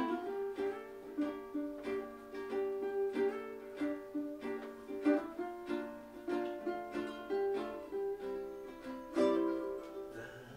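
Acoustic ukuleles playing a tune together, with steady rhythmic strums and a moving melody line.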